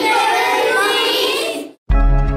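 A group of children singing together in unison, many young voices at once. The singing cuts off abruptly near the end, and a music track starts right after a brief silence.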